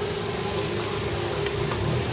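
Street ambience with traffic: a steady hum carrying one constant tone over a low rumble, with a few faint clicks.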